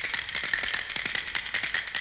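A dense, irregular crackle of rapid clicks, with a faint steady high tone underneath.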